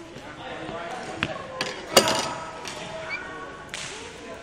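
A few sharp hits of a badminton racket striking a shuttlecock, echoing in a large sports hall; the loudest comes about two seconds in, with lighter knocks before it and one near the end. Voices talk in the background.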